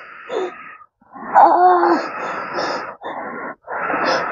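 A woman moaning and wheezing in pain: a breathy exhale, then a longer strained cry, then two shorter breathy gasps.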